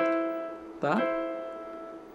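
Electronic keyboard sounding a held two-note interval, E and the C above it, a minor sixth apart. It is struck at the start and slowly dies away.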